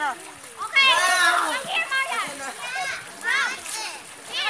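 Children's high-pitched shouts and calls, three or four in quick succession, over water splashing in a swimming pool.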